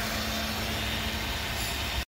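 A machine running steadily: an even hiss with a low steady hum underneath.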